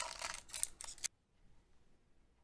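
Foil booster-pack wrapper being torn open by hand, crinkling and crackling in a quick run of rustles for about the first second.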